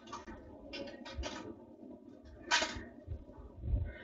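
Faint, short clicks and rattles of plastic game sticks and glass marbles being handled in a Big Ouch marble-tower game: three quick ones about a second in, a louder one about two and a half seconds in, and soft knocks near the end.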